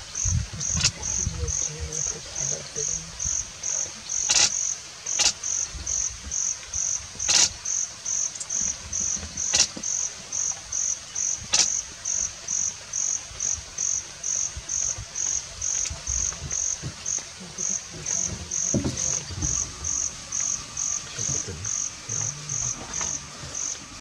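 An insect chirping in a steady high-pitched rhythm, about two chirps a second, with a few sharp clicks in the first half.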